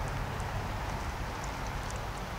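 Steady background noise with a low rumble and a few faint ticks, without any distinct event.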